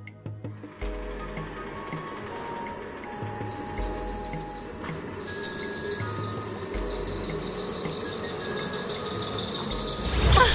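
Film score with low sustained notes, joined about three seconds in by a loud, shrill, insect-like high buzzing that holds to the end, then a loud swell right at the end.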